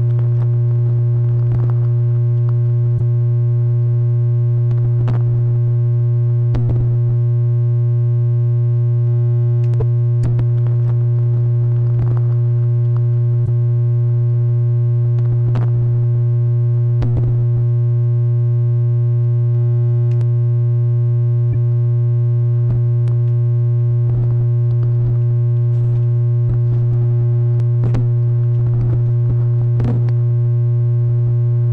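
Electronic noise track: a loud steady low drone tone with a fainter steady higher tone above it, broken by irregular clicks and crackles scattered throughout.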